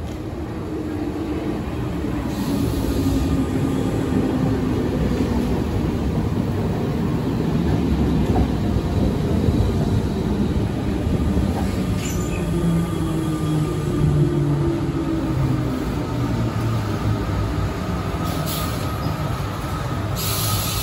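RER B MI79 electric multiple unit pulling into the platform and braking to a stop. The rumble of its wheels on the rails grows over the first few seconds as it comes alongside, then a falling whine from the motors as it slows to a halt.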